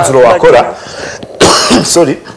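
A man's speech trails off, then he gives a single short cough about a second and a half in.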